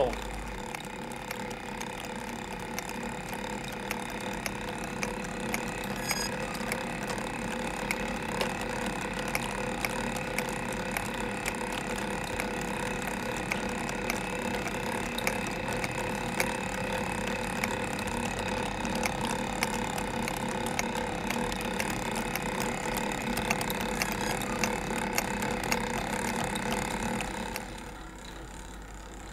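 Mechanical puppet automaton running: a steady mechanical whir with many small clicks as its screw spindle drives a carriage along a track of cams and pawls that work the figures.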